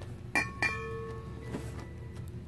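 Stainless steel mixing bowl knocked twice in quick succession by a small food-colouring bottle at its rim. After the second knock it rings on with a clear metallic tone for more than a second.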